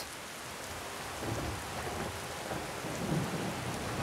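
Rain falling steadily, with a low rumble of thunder starting about a second in and rolling on for a couple of seconds.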